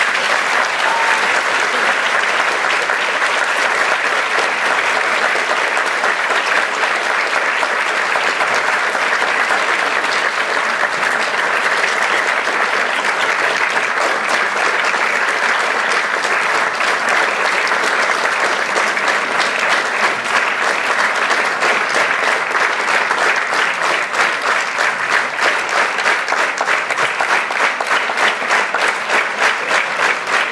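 Audience applause filling the hall, dense and steady, falling into a regular rhythmic clap over the last few seconds.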